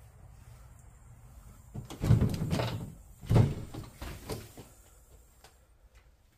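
Wooden interior door being pushed open: two dull bumps with rattling, about two seconds in and again about a second later, then a few lighter knocks.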